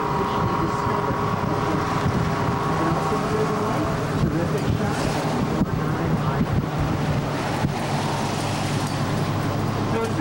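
Steady engine, road and wind noise heard from aboard a moving open-sided tour trolley, with voices underneath.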